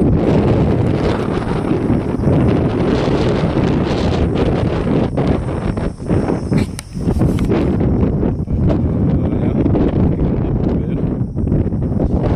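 Strong wind buffeting the microphone, a steady low rumble with brief lulls about six and seven seconds in.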